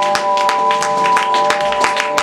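Live band music: a chord of steady held notes, with a quick, uneven run of sharp taps over it, about six a second.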